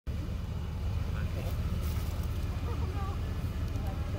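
Low, steady rumble of idling cars in a queue, with faint voices talking about two and a half seconds in.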